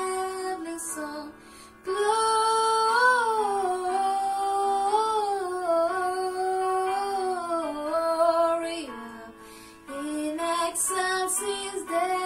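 A girl singing a Christmas carol solo. One long melismatic phrase winds up and down in pitch, breaks off briefly about three-quarters of the way through, then the singing resumes.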